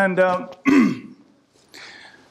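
A man clearing his throat in two short bursts within the first second.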